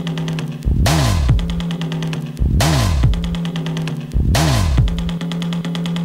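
Grime instrumental: a deep bass that bends up and back down about every two seconds over a held low note, with a fast, even hi-hat tick on top.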